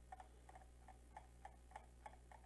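Near silence: a steady low hum with faint, light ticks about three times a second.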